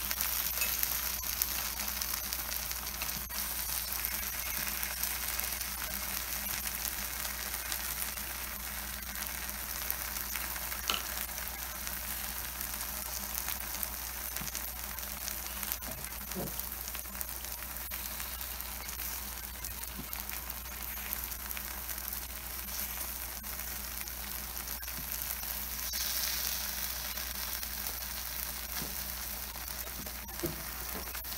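Takoyaki batter of okonomiyaki flour and shredded cabbage sizzling steadily in the wells of a hot takoyaki plate. A few light taps of the bamboo skewer turning the balls can be heard now and then.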